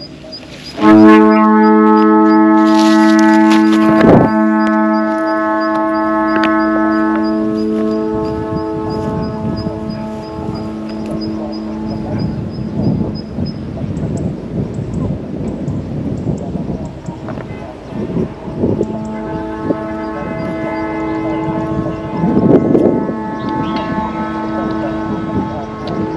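The harmonized set of flutes on a Vietnamese flute kite (diều sáo), sounding a steady chord of held tones. The chord starts suddenly about a second in as the kite takes the wind. Midway it fades under wind noise on the microphone, then swells again near the end.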